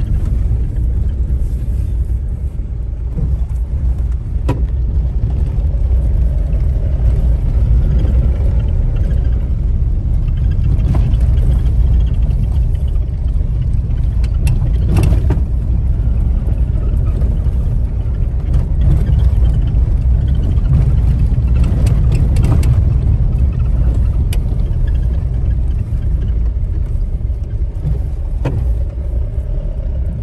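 Steady low rumble of a car driving over a rough road, heard from inside the cabin, with a few short sharp knocks along the way.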